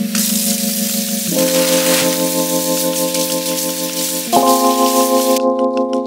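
Kitchen tap running water over loquats in a mesh strainer in the sink, a steady hiss that cuts off suddenly near the end as the tap is shut. Background keyboard music with sustained chords plays throughout.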